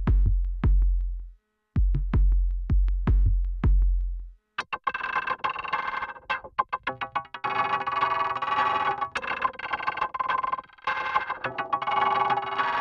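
Two percussion loops from the Delicata sample library play in turn. First an 80 BPM loop of deep, booming hits topped with sharp clicks, which cuts off about four and a half seconds in. Then a 105 BPM triplet loop of fast ticking percussion over sustained ringing tones.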